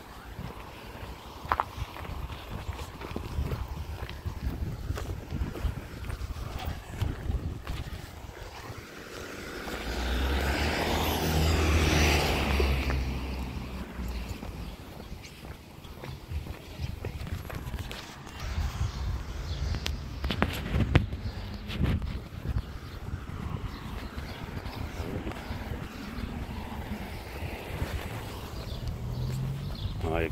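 Street sound while walking along a pavement: a low rumble with footsteps, and a car passing on the road alongside, swelling and fading about halfway through. A few sharp clicks follow later on.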